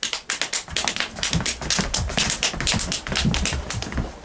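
Clip-clop of hoofbeats: a fast, steady run of sharp taps, with low thuds underneath from about a second in, stopping abruptly.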